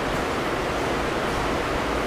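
Steady, even hiss of background noise with no distinct events: the room and recording noise floor heard in a gap in the speech.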